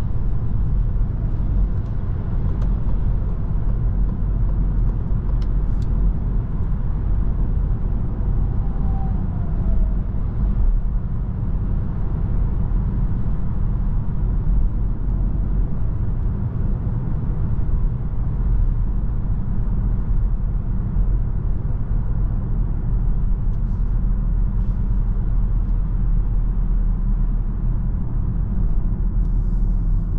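Steady cabin noise of a 2023 Citroën C5 Aircross cruising at motorway speed: a deep, even rumble of tyres on the road and wind, over the hum of its 1.2-litre three-cylinder petrol engine.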